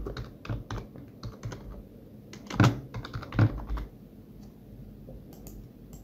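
Computer keyboard typing: a quick run of key clicks, with two louder knocks about two and a half and three and a half seconds in. A few faint clicks follow.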